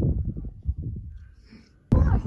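Wind buffeting the microphone, a low rumble that fades away. It stops abruptly and louder wind noise starts just before the end.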